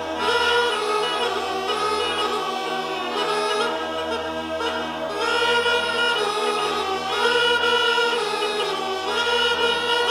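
Background music: a choir singing long, layered held notes.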